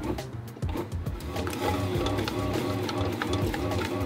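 Background music over a bread maker's kneading motor running steadily as it works the pizza dough.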